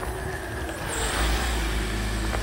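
A vehicle engine running close by: a steady low rumble that swells slightly about a second in.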